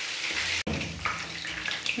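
Chicken pieces shallow-frying in hot oil in a pan: a steady sizzling hiss, broken by a momentary gap just over half a second in.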